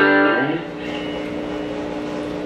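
Electric guitar, a Fender Telecaster, played through an amplifier: a held chord rings loud, a note bends upward about half a second in, and the notes then sustain more quietly.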